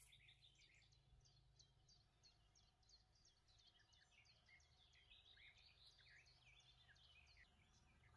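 Near silence: a faint low hum with many faint, short, high chirps, like birds in the distance.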